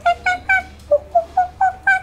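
Monkey chatter: a rapid run of short high hoots, about four a second, each dropping sharply in pitch, with the series climbing higher as it goes.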